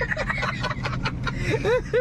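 Two men laughing, choppy at first and breaking into short rising-and-falling laughs near the end, over a steady low hum inside a truck cab.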